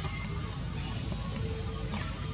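Steady outdoor background noise: a low rumble under a continuous high hiss, with a couple of faint ticks and no distinct animal call.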